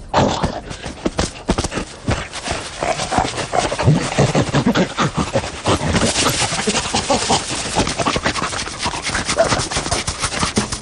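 Cartoon sound effects of a lion scratching and thrashing on the ground to relieve an itch: a rapid, dense run of scuffling and scraping sounds with knocks, mixed with the lion's panting grunts.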